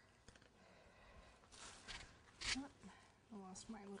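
Quiet room tone with two brief soft hisses in the middle, then a woman starts speaking near the end.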